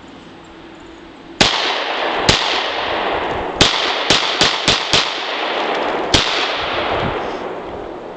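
An original Colt Delta Elite 1911 pistol firing eight 10 mm Auto shots. Two single shots come first, then a quick string of four about a third of a second apart, then one last shot. Each report carries a long reverberating tail.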